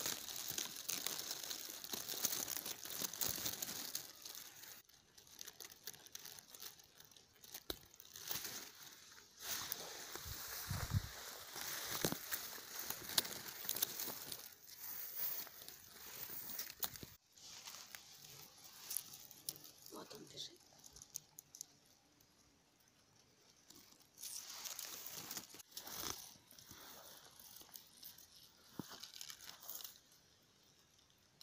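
Faint crackling rustle of dry grass and stems close by, coming in irregular spells, with a near-silent pause about three quarters of the way through.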